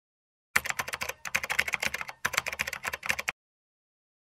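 Rapid computer-keyboard typing: fast clicks in two runs, with a short break a little past the middle.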